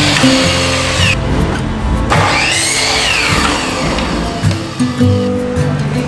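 Electric miter saw cutting cedar tongue-and-groove boards, heard over background music: one cut winds down about a second in, then the saw spins up, cuts and winds down again between about two and four seconds in.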